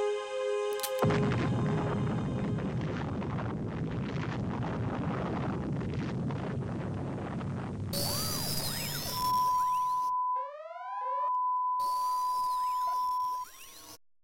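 Electronic animation sound effects: a held tone ends about a second in and gives way to a long rushing noise, then chirping electronic sweeps over a steady high beep that drops out briefly and cuts off shortly before the end.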